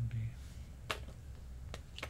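Two sharp clicks about a second apart as pens are handled on a desk: the writer puts one pen down and takes up a marker.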